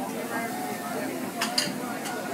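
Background chatter of several voices at a dinner table, with two sharp clinks close together about a second and a half in.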